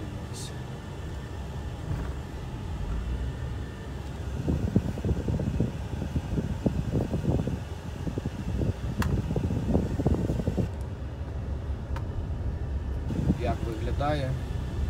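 Steady low road and engine rumble inside a moving car's cabin, with the hum of the ventilation fan. In the middle comes a run of irregular short knocks and rattles.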